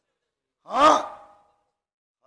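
A man sighs once into a microphone near the middle: a short voiced breath, falling in pitch and trailing off, about half a second long.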